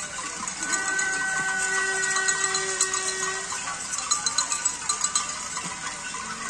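Parade noisemakers: several steady horn-like notes held together for about three seconds, then a fast series of sharp knocks, about six a second, near the end, over a constant hiss of crowd noise.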